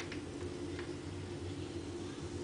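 A couple of faint metallic clicks as a steel change gear on a lathe's end gearing is handled on its shaft, over a steady low hum.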